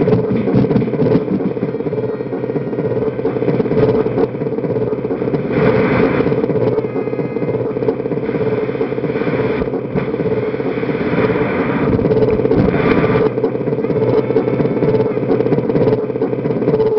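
Distorted electronic noise played by hand on a circuit drum pad: a steady low buzz with rough bursts of hiss every few seconds.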